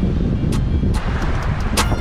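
Strong wind buffeting the microphone: a loud, steady low rumble with brief crackles.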